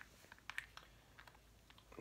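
Faint, scattered light clicks and taps of small makeup items being handled as a makeup brush is picked up from the desk.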